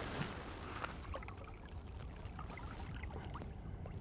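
Soft water trickling and light splashing as a small brown trout is held in the river current by hand and let go.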